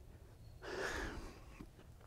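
A single soft breath from a man close to a clip-on microphone, about half a second long and starting about half a second in.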